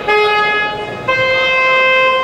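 Ring timer's electronic horn signalling the start of a boxing round: one steady tone, then a higher, longer tone beginning about a second in.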